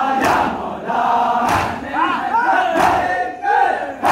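A crowd of men chanting a Muharram nauha in unison, punctuated by matam: hands striking chests together, three sharp strikes about 1.3 seconds apart.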